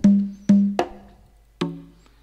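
Sampled conga drum hits from a software drum kit, sounding a rumba rhythm: four sharp strokes with a short low ring, spaced unevenly, the last a little further apart.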